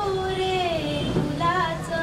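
A girl's solo voice singing a Marathi song into a microphone. She holds her notes, one of them slides down in pitch through the middle, and a new phrase starts near the end.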